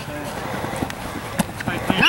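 Indistinct shouting from players and onlookers during a flag football play, over steady background noise, with a few short sharp knocks.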